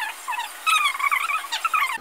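A very high-pitched, squeaky chipmunk-like voice with quickly wavering pitch, thin with no low end. It is typical of sped-up vlog audio.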